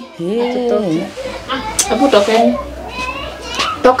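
Raised, overlapping voices. A drawn-out, wavering call lasts about a second at the start, and choppier speech follows.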